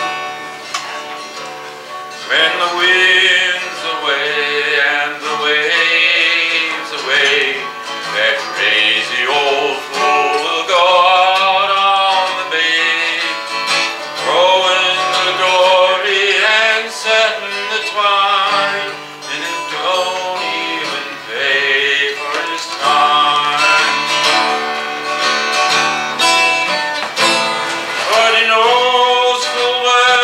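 A man singing a folk song to his own acoustic guitar. The guitar plays alone for about the first two seconds, then the voice comes in.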